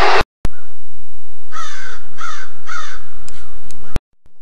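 A crow cawing three times, about half a second apart, over a loud steady hiss.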